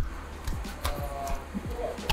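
Quiet background music in a pause between spoken sentences.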